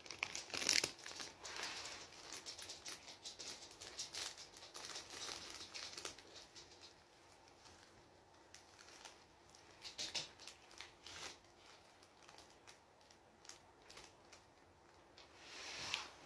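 Faint crinkling and rustling of something handled by hand: a run of irregular crackles over the first several seconds, then a few more about ten seconds in.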